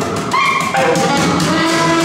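Live free jazz trio playing: a saxophone line moving through short notes over double bass and drums.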